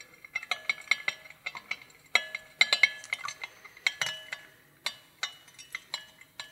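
A spoon stirring oil in a glass beaker, knocking against the glass in repeated, irregular clinks, each with a short ring.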